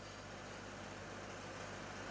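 Faint steady hiss with a low hum underneath: room tone of the hall through the microphone and sound system.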